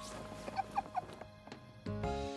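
Cartoon sound effect of three quick, short, rising squeaks, about a second in, as a string of knotted scarves is pulled out from beside an ear in a magic trick, over soft background music.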